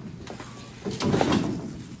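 A corrugated sheet-metal panel scraping and rattling as it is gripped and pulled over the ground, in one noisy rush about a second in that lasts about half a second.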